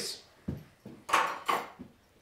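Brief handling noises of wooden workpieces being set aside: a soft knock, then a couple of short scraping rustles and a small click.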